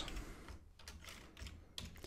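Faint typing on a computer keyboard: a series of light, irregular keystroke clicks.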